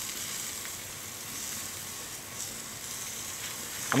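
Hanger steaks sizzling on the grate of a charcoal Weber kettle grill: a steady hiss.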